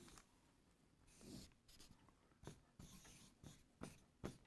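Faint scratching of a marker drawing on a paper easel pad: one longer stroke about a second in, then several short, quick strokes.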